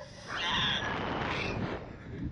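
A rider on the SlingShot ride crying out for about a second, a strained, drawn-out voice rather than words, with wind buffeting the microphone underneath.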